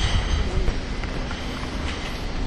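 Wind buffeting the microphone of a handheld camera, a steady low rumble.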